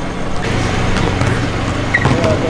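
A vehicle engine running steadily close by, a low even hum under background noise.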